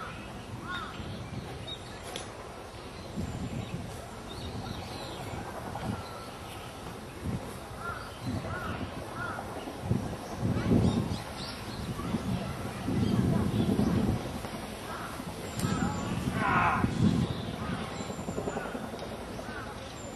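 Open-air park ambience with birds calling now and then, short arched calls in little runs of two or three. Low muffled rumbles swell up a few times in the second half and are the loudest sounds.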